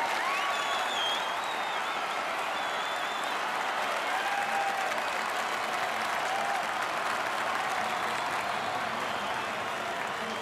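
Theatre audience applauding steadily at the end of a stage number, a dense wash of clapping hands.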